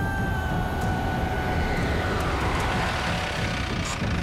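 A vehicle engine running low under a held background-music drone, with a rush of noise that swells and fades about halfway through.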